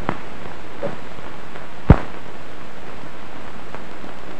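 Steady hiss of an old film soundtrack with no other sound on it, broken by one sharp pop about two seconds in.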